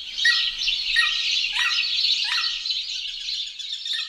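Birdsong: a dense chatter of high chirps, with a repeated call that falls in pitch sounding four times in the first two and a half seconds.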